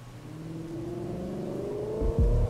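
An engine revving up, its pitch rising steadily and growing louder.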